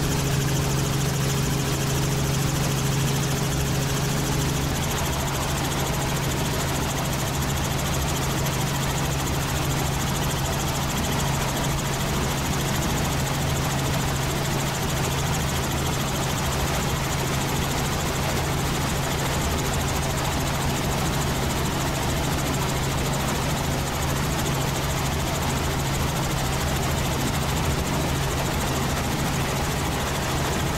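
Helicopter in steady cruising flight, heard from inside the cabin: a continuous low engine and rotor hum over an even rushing noise.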